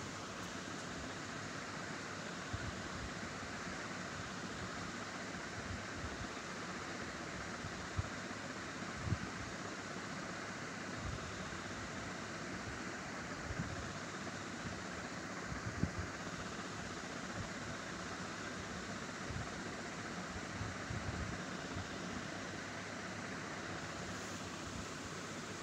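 Steady hiss of background noise, with a few faint low knocks scattered through it.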